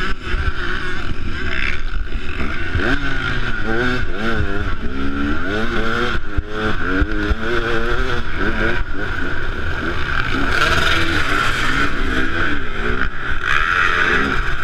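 KTM enduro motorcycle engine revving up and down repeatedly under load on a muddy hill climb, with other dirt bike engines running close by.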